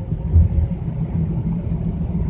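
Steady low rumble of a car's cabin, with a brief thump about half a second in.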